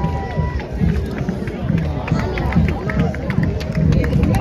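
Crowd chatter with music playing: a few held notes that stop about half a second in, over a low, regular beat.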